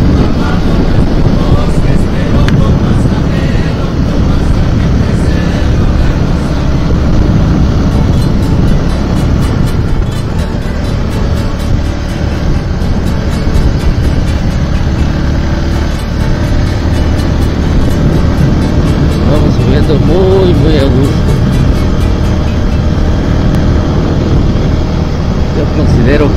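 Zontes V1 350 motorcycle riding at a steady road speed: engine running evenly under a heavy rush of wind on the microphone.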